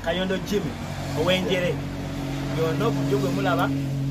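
A man talking over a steady low engine hum, like a vehicle idling close by.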